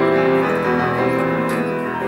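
Grand piano playing a solo passage of sustained chords in a classical song accompaniment, with the voice silent.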